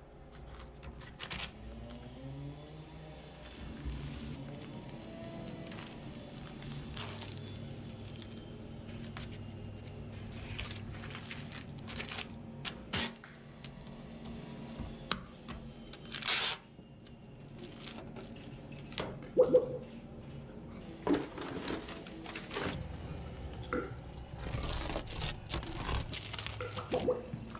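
Plastic building wrap crinkling and scraping as it is cut and folded around an exterior receptacle box and flashing tape is pressed on, with several short tearing sounds. Quiet background music with sustained notes plays under it.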